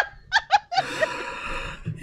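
A person laughing: a few short bursts of laughter in the first half second, then a softer, breathy laugh trailing on until near the end.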